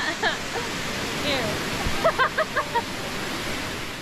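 Steady rush of creek water, with a woman's laughter and a few words over it.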